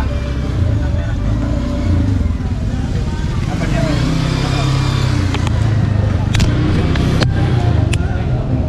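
Busy outdoor street-market ambience: a steady low rumble of road traffic with indistinct voices in the background, and a few sharp clicks in the last couple of seconds.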